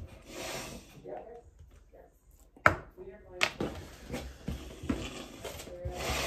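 Small tabletop handling noises: two sharp knocks about two and a half and three and a half seconds in, then light clicks and rustling as a pen is used and a hand reaches for the bag of cards.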